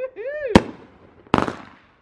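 Consumer aerial fireworks going off: a sharp bang about half a second in, then a second report that breaks into a quick cluster of cracks a little later. A person's short exclamation comes just before the first bang.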